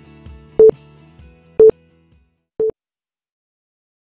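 Countdown timer beeps: three short, loud single-pitch beeps a second apart, the last one shorter and softer, over soft background music that fades out after the second beep, followed by silence.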